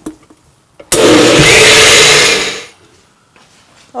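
Countertop blender puréeing cooked whole beans with broth and water: it starts abruptly about a second in, runs loudly for under two seconds, then winds down.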